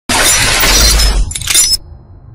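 Glass-shattering sound effect: a loud crash of breaking glass with a deep low boom under it, then two shorter crashes, dying away just before two seconds.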